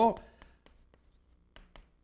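Chalk writing on a blackboard: a few faint taps and short scratches as the strokes of a character go down, following the tail end of a man's spoken word at the start.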